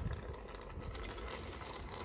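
Tinned tomatoes pouring from a can into a steel stockpot of curry, faint against a steady low rumble and hiss.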